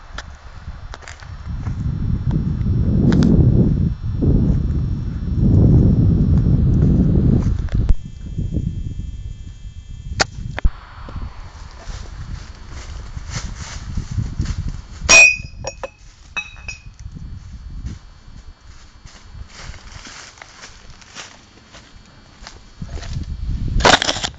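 Air rifle fired at a glass wine bottle. The loudest event comes about fifteen seconds in: a sharp crack with a brief ringing ding, followed by a smaller ringing knock a second later. A fainter crack comes at about ten seconds. A low rumble fills the first eight seconds.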